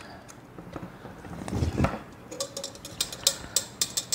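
Metal flan pan being lifted off an unmoulded flan on a ceramic plate: faint handling noise and a soft bump, then a quick run of light metallic clicks and clinks in the second half.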